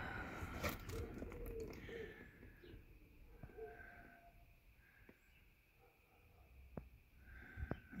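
Quiet background with a few faint, short bird calls and some light clicks from a cardboard box being handled.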